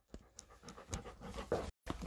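An English Golden Retriever panting quietly in short, repeated breaths, with a few clicks and rubs from the phone as it is moved down toward her legs.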